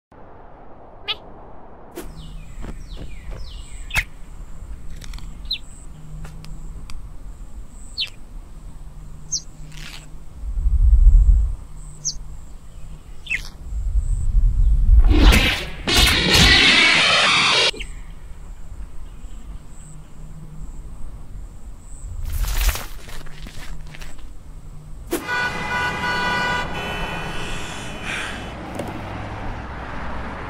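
Cartoon sound effects: scattered short clicks and chirps, a very loud low thud about eleven seconds in, a loud longer noisy stretch a few seconds later, and a short pitched, tonal passage near the end.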